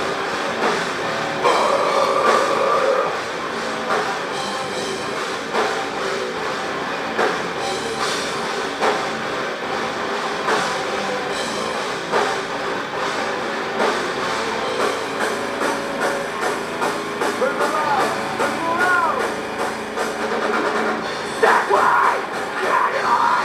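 Heavy metal band playing live: distorted electric guitars, bass and a drum kit, with heavy drum hits landing about every second and a half.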